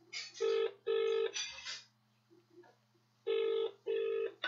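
Telephone ringing in the British double-ring pattern: two short rings close together, then after about two seconds' gap another pair of rings. A call is waiting to be answered.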